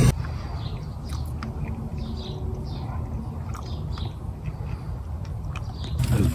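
Water in a 1.2 litre pot at a hard rolling boil, with the food pot stacked on top as a double boiler: a steady low rumble with scattered small pops and chirps.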